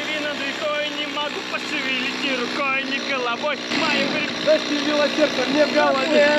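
A two-stroke chainsaw idling steadily, held after cutting a fallen pine log into rounds, with voices talking over it.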